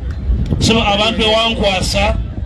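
A man's voice speaking through a microphone and loudspeakers, starting about half a second in, over a steady low rumble.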